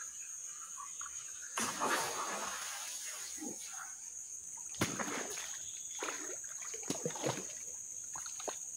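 Whopper Plopper topwater lure being retrieved across the water, its tail churning the surface in irregular splashing bursts, the strongest about two seconds in, near five seconds and near seven seconds.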